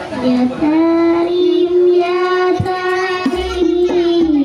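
A child singing sholawat, a short low note and then one long held note lasting about three seconds.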